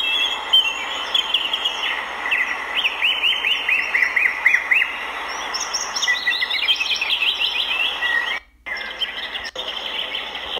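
Small birds chirping: runs of quick, high chirps, each rising and then falling in pitch, over a steady outdoor hiss, with a brief drop-out near the end.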